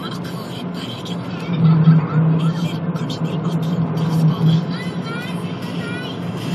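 Car driving on a winding road, heard inside the cabin: engine and road noise with a steady low drone that grows louder for about three seconds in the middle.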